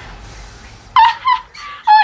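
A woman's excited, high-pitched squealing laughter, in short yelps that start about a second in, after a faint low rumble fades away.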